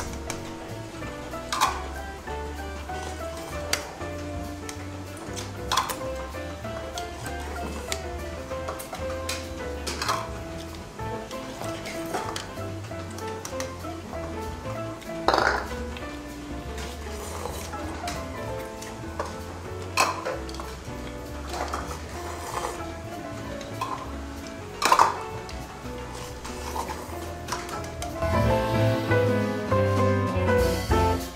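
Background music with a steady bass line, over which small bowls and dishes clink sharply about every two seconds as noodle bowls are picked up and set down; the loudest clinks come about halfway through and near the end.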